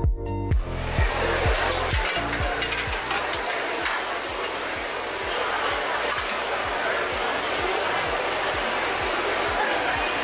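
Steady rushing, scraping noise as wet spent grain is raked out of a lauter tun's side door into a metal chute. Under it, background music's bass beat thuds about twice a second, loud at first and fading away.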